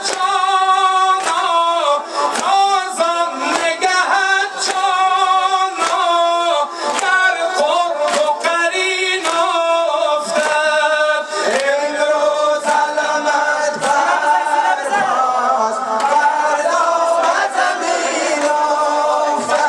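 A man singing a Shia devotional praise poem (manqabat) unaccompanied into a microphone, with long gliding, ornamented notes.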